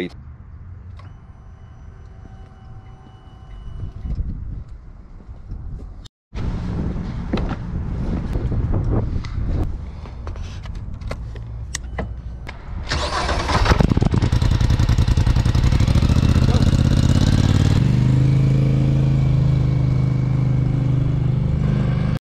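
The 2023 Polaris Sportsman 850 ATV's parallel-twin engine is started with the handlebar starter button about 13 seconds in, catching at once and then running at a steady idle, its pitch stepping up slightly a few seconds later. Before that there is only quieter handling noise around the machine.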